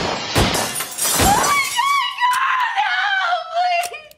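Two pistol shots, about a second apart, in the first second and a half, then a long, high, wavering scream.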